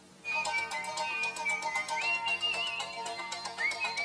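A children's TV channel logo jingle distorted by an editing effect into a buzzy, ringtone-like electronic sound. It starts about a quarter second in, with a steady high tone that steps up in pitch about two seconds in, and a fast flutter running through it.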